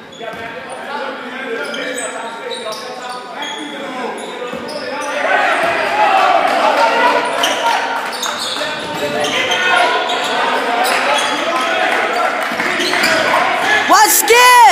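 Basketball bouncing on a hardwood gym floor during play, repeated sharp knocks that echo in the hall, over the mixed voices of players and spectators. The voices grow louder about five seconds in.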